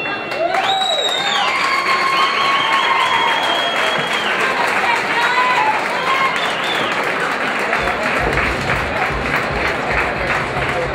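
Boxing crowd cheering, shouting and applauding as the bout ends, many voices rising and falling over the clapping. About eight seconds in, music with a thumping bass beat starts underneath.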